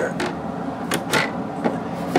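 A few sharp clicks and light knocks as the cover of an RV power converter panel is worked open by hand.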